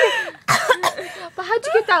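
A young woman's voice, giggling and vocalizing, with a short cough about half a second in.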